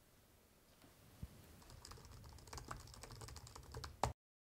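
Faint typing on an Apple MacBook laptop keyboard: quick, irregular key clicks that start about halfway in, after a single soft low thump about a second in.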